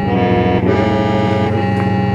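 Hmong qeej, a bamboo free-reed mouth organ, playing a lament tune (qeej kho siab): several pipes sound together over a steady low drone, with the upper notes changing right at the start and again about half a second in.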